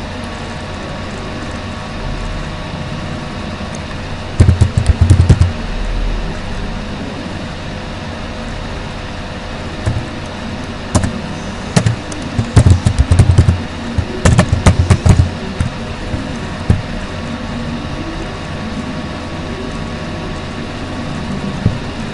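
Computer keyboard typing and mouse clicks, picked up loudly by the microphone as clusters of sharp taps and thumps: one short burst a few seconds in, then more from about 10 to 15 seconds in, over a steady background hum.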